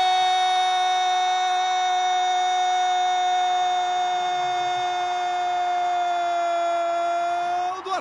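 A football commentator's drawn-out goal cry. One vowel of 'gol' is held on a single steady high pitch for nearly eight seconds, sagging slightly just before it breaks off.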